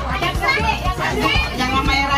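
Several children's voices talking and calling out over one another in a lively family gathering.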